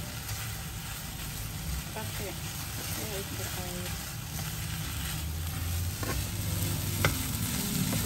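Durian flowers stir-frying in a pan, sizzling steadily while being stirred, with a single sharp knock about seven seconds in.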